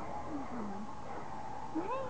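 Dog whining: a short low whine about half a second in, then a higher whine rising in pitch near the end.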